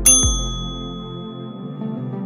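A bright, bell-like ding right at the start that rings on and fades over about a second: the interval timer's chime marking the switch to the next exercise. Underneath, ambient background music with a deep falling bass hit.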